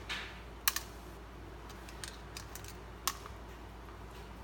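Hands handling a small baitfish and a metal double hook, making light handling noises. There is a brief rustle at the start, a sharp double click just under a second in, a few lighter ticks, and another sharp click about three seconds in.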